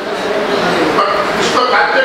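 A man's voice speaking continuously in a lecture, with no other sound standing out.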